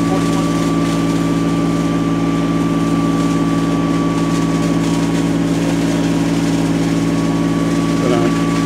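Small fire-engine pumper running steadily while it pumps water onto the fire, a constant engine hum with a thin steady whine above it.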